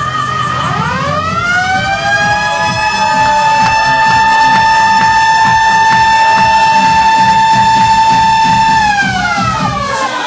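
Dance music over a club sound system: a long siren-like synth tone slides up, holds one steady pitch for about six seconds, then slides down near the end, over a steady beat.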